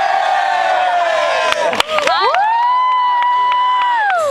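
A group of young men yelling a cheer together as a huddle breaks: first a long shout falling in pitch, then a sharp knock about two seconds in, then one long high yell held at a steady pitch.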